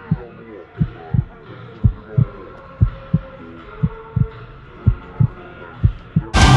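Heartbeat sound effect: paired low thumps, about one pair a second, over a muffled background with the highs cut away.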